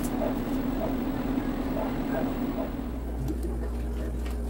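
A bird cooing several times over a steady hum; about three seconds in, the hum changes to a deeper, even drone.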